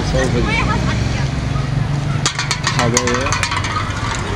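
People's voices talking over a steady low hum that stops about three seconds in, with a few sharp clicks a little past the middle.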